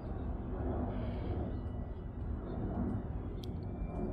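Outdoor background noise: a steady low rumble with a few faint brief ticks.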